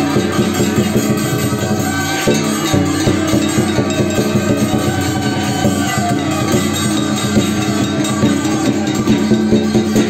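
Live percussion accompanying a qilin dance: drum, gongs and cymbals played in a dense, continuous beat, with the metal ringing on between strikes.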